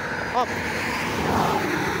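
A passing vehicle's road noise, swelling to a peak partway through and easing off.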